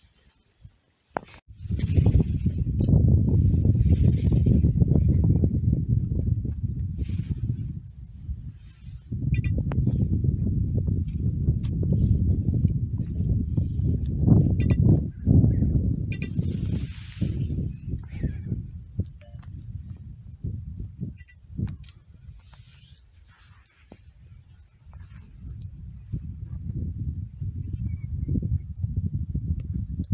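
Wind buffeting the microphone in gusts: a low rumble that swells and fades, loudest in the first half, dying down about two-thirds of the way through and building again near the end.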